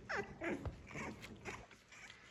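Young French bulldog puppies whimpering faintly: several short whines in a row, each falling in pitch.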